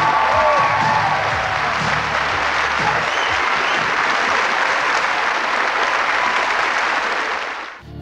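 A television studio audience applauding after a song, with the band's last notes dying away under the clapping in the first second. The applause is steady and full, then cuts off abruptly just before the end.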